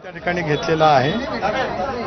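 Speech only: a man talking, with other voices overlapping around him.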